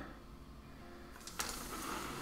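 A quiet room for over a second, then a sharp click and a brief scratchy rustle as pastel pencils are slid aside on the drawing table.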